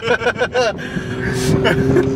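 Men laughing inside a moving vehicle's cab, giving way under a second in to a steady engine drone and road noise.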